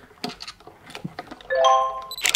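A short rising chime of a few bell-like notes in quick succession near the end, an edited-in sound effect. Before it, faint clicks and scrapes of hands working screws out of a protein skimmer's plastic base.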